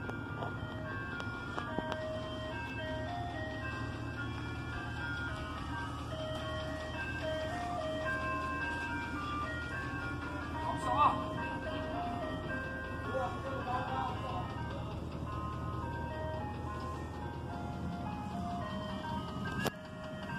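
Ice cream truck's jingle playing a simple melody of single notes over a low, steady engine hum. A voice calls out briefly about halfway through.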